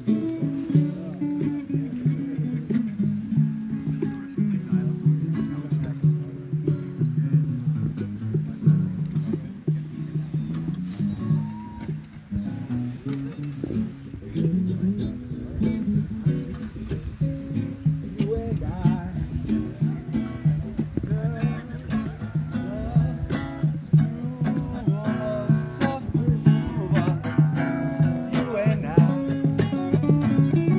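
Two acoustic guitars played together, chords and picked notes running on without a break.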